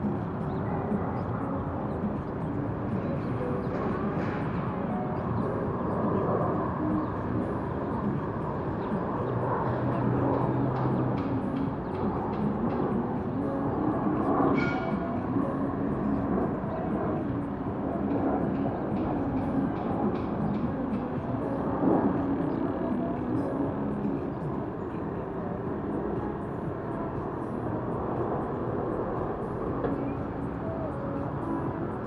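Urban outdoor ambience: a steady wash of city traffic noise with faint distant voices mixed in.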